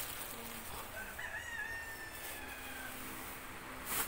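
A single faint, drawn-out animal call, starting about a second in, that rises briefly and then slowly falls over about two seconds.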